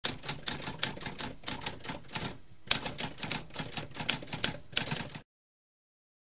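Typewriter keys clacking in a quick, uneven run of strokes, with a short pause about halfway through. The typing cuts off a little after five seconds in.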